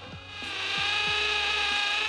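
Cordless hammer drill boring through plywood with a spade bit under load: a steady, high-pitched buzzing whine that builds over the first half second and then stops abruptly.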